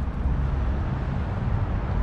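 Steady low vehicle rumble with no distinct events.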